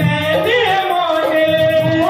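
Live devotional song: a woman singing into a microphone over amplified instrumental accompaniment, with a held steady note and a pulsing low beat.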